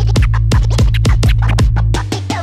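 Turntable scratching over an electronic beat with a heavy, steady bass: a DJ cuts a record back and forth in quick strokes, about five a second.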